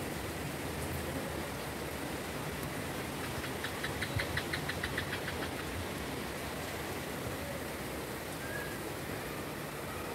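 Steady rain falling, an even hiss. About three and a half seconds in, a rapid run of short high ticks, about eight a second, lasts roughly two seconds.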